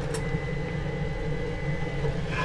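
A steady low mechanical hum with a faint steady high whine, and a single light click just after it begins.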